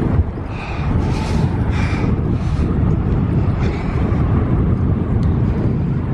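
Wind rushing over the microphone of a moving bicycle rider: a loud, steady low rumble.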